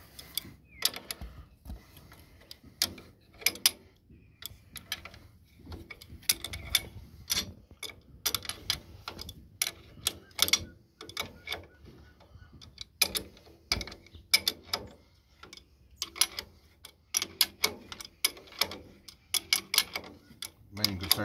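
Irregular metallic clicks and taps, several a second in bunches with short pauses, as an adjustable wrench is worked on the bolts of a steel cultivator shank clamp.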